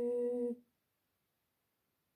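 A woman's solo unaccompanied voice holding the final note of a Znamenny chant troparion, a steady low sung note that cuts off about half a second in.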